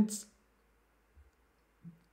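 A man's voice ends a word right at the start, then near silence in a pause of speech, broken only by a faint low thump about a second in.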